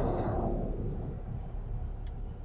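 Low, steady rumble of a moving car's engine and tyres, heard from inside the cabin.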